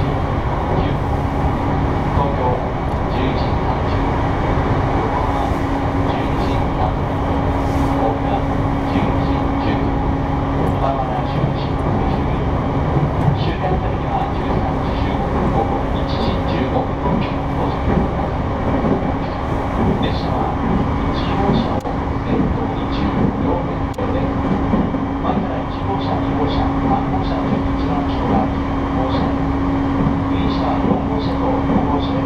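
Running noise heard inside an E233-series electric commuter train travelling at speed: a steady rumble of wheels on rail with a steady electric hum underneath.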